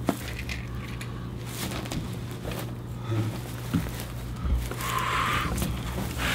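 Quiet pause filled with faint handling and rustling sounds over a steady low hum. There is a sharp click at the start and a brief hiss about five seconds in.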